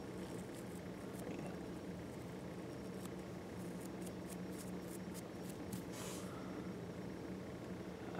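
Faint, crisp ticks and rustling from fingers spreading the very fine tinned copper strands at the stripped end of a 10-gauge silicone-insulated wire, over a steady low hum.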